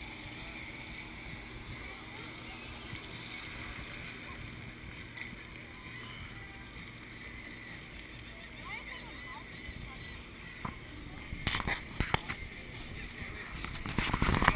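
Steady wind-and-sea noise on the open deck of a moving cruise ship, over a low steady hum and faint passenger chatter. A few sharp knocks come about twelve seconds in.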